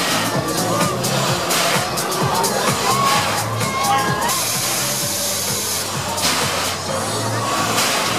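Loud fairground ride music with a steady beat, with riders shouting and screaming over it and a burst of hiss about halfway through.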